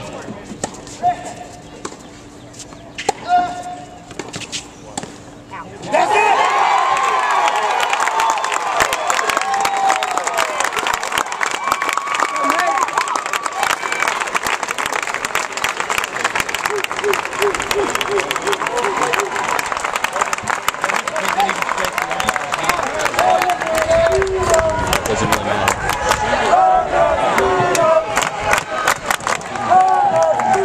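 A crowd of spectators cheering, shouting and clapping, breaking out suddenly about six seconds in and carrying on, as at the winning point of a tennis match. Before that it is quieter, with a couple of sharp hits.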